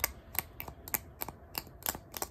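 The blunt end of a sewing needle scraped repeatedly against a metal screw, a quick series of short scraping clicks about three or four a second: the needle being stroked to magnetize it for a homemade compass.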